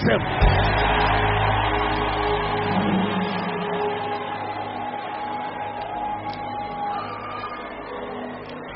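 Background music of sustained keyboard pad chords over a deep bass note; the bass drops out about two and a half seconds in and the chords slowly fade.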